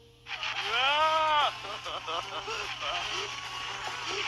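Cartoon soundtrack: a character's long cry that rises and then falls in pitch, followed by a string of short vocal sounds over a noisy background.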